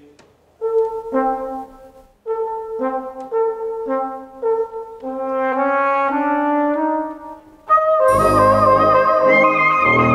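Brass music: a phrase of short held notes in two parts, repeated and climbing, then about eight seconds in a louder, fuller brass ensemble comes in.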